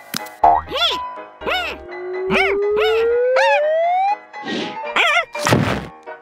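Cartoon sound effects: a run of springy boings, each rising and falling in pitch over a low thud, with a long rising whistle-like glide through the middle. Near the end come a couple of whooshing swishes.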